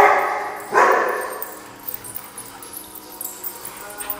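A dog barking twice during rough play, the two loud barks under a second apart, each trailing off in the hard-floored room.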